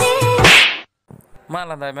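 Music with singing breaks off about half a second in with a short, loud swoosh, followed by near silence. From about 1.5 s a voice draws out "ma la" in a wavering pitch.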